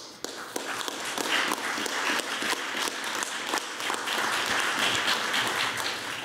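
Audience applause: many hands clapping together in a steady round that starts abruptly at the close of a poem reading.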